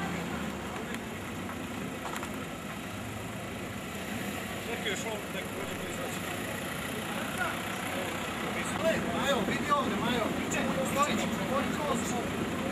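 Outdoor street noise with a steady low hum from a car engine running at idle. Indistinct voices of several people talk in the background, getting busier in the second half.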